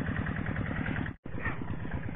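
A two-wheel hand tractor's engine running steadily with a rapid low beat as it plows the paddy. The sound cuts out for an instant just past a second in.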